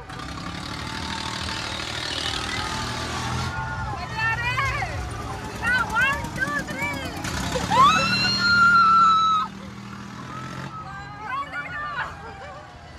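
Riders on a fast-turning fairground wheel shrieking and whooping: a rush of noise at first, then a string of short rising-and-falling yells, then one long high scream about eight seconds in, over a steady low rumble.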